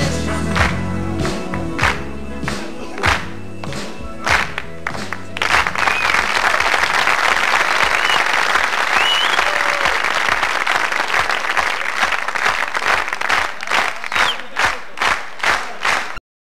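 A rock band of electric guitar, bass, keyboards and drums plays the closing chords and final drum hits of a song, ending about five seconds in. Audience applause with a few whistles follows, and near the end the clapping settles into a steady rhythm of about two claps a second.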